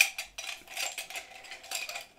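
Pencils and pens rattling against each other and the inside of a mug as a hand rummages through them: a run of light clinks and clicks, the sharpest right at the start.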